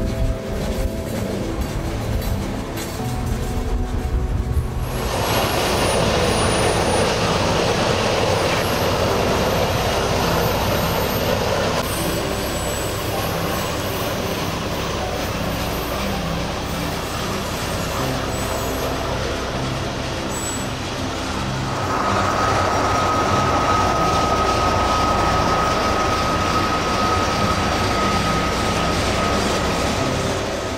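Freight train rolling past, a steady rushing rumble of wheels on rail that grows louder about five seconds in. A thin, steady wheel squeal comes in about two-thirds of the way through. Music plays underneath.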